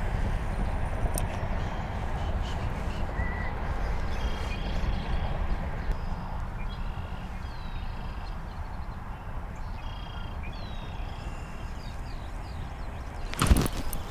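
Wind buffeting the microphone as an uneven low rumble, with faint short bird calls now and then. A sudden loud knock near the end.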